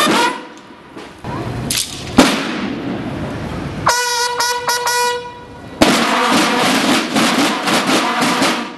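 Military band bugles break off from a phrase. A few seconds in, a single bugle-like call of several short held notes follows. Near two-thirds of the way through, the full war band of bugles and snare drums starts abruptly and plays on.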